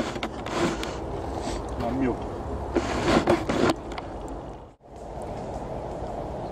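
Background voices talking quietly in short snatches over a steady outdoor hiss. The sound drops out for a moment near the end, then the hiss returns.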